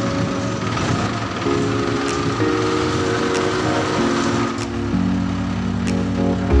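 A concrete mixer truck's diesel engine running steadily under background music with sustained chords.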